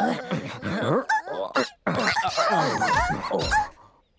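Cartoon creature characters making wordless, high, sliding vocal sounds, several voices overlapping, in two stretches with a short break about two seconds in.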